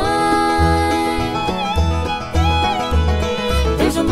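Bluegrass band playing an instrumental passage between sung lines: held, sliding melody notes over a steady, evenly spaced bass.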